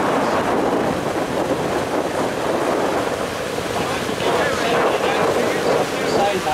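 Steady rushing of a ferry's churning wake behind the stern, with wind buffeting the microphone.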